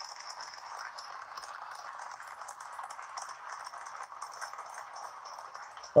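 Steady background noise: an even hiss of room tone with faint, scattered small ticks.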